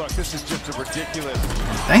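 Background music over basketball game audio: a ball being dribbled on a hardwood court, with a few irregular thumps, and some speech mixed in.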